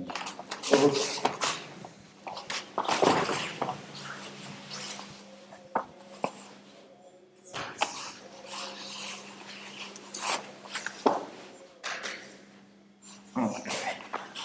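Two grapplers in cotton kimonos running through a takedown to the mat: the gi fabric rustles, feet shuffle on the mats, and a few sharp thuds land through the sequence.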